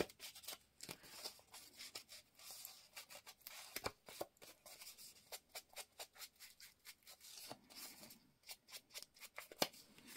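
An ink applicator tool rubbed and dabbed along the edges of a paper cut-out to ink them, heard as a faint, irregular run of short scratchy strokes on paper.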